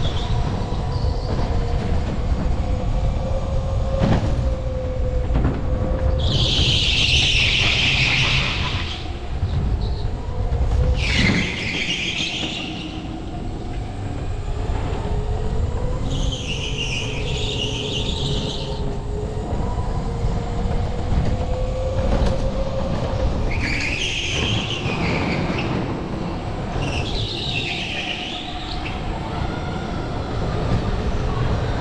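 Electric go-kart running at racing speed. The motor's whine rises and falls with speed over a steady low rumble, and the tyres squeal five times through the corners, each squeal lasting a second or more. The squeal about six seconds in is the loudest.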